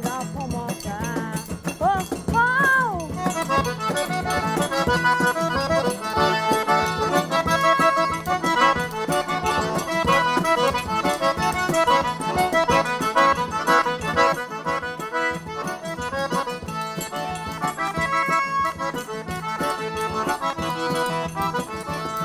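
Cajun band music led by a diatonic button accordion, with acoustic guitar and cajón, playing a lively tune. A voice slides through a few notes near the start.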